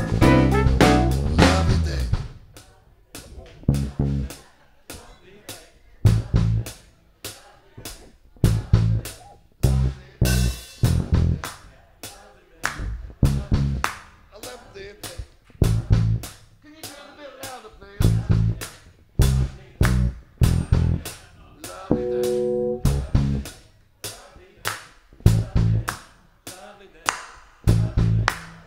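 Live funk band playing an instrumental breakdown: after about two seconds the full band drops away to a sparse rhythm of sharp drum-kit hits, short bass guitar notes and electric guitar. A held chord sounds for about a second and a half near the end.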